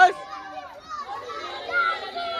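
A group of children's voices shouting and calling over one another, with a loud shout right at the start.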